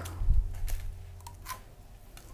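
Hands handling a small plastic skull-shaped slime container: a soft low thump near the start, then a few light clicks.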